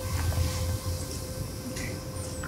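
Room tone: a steady low hum with a faint, thin steady tone above it.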